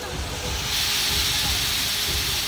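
Long roller slide's rows of rollers rattling and whirring under a rider going down it, a steady rushing clatter that grows louder about a second in.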